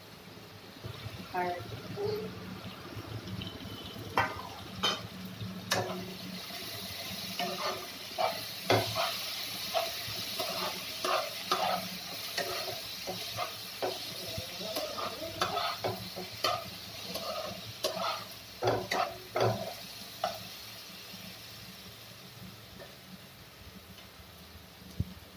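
Onions and green chillies sizzling in oil in a nonstick kadai while a steel spatula stirs and scrapes through them, with repeated sharp knocks of the spatula against the pan. The sizzle is steady and strongest through the middle stretch.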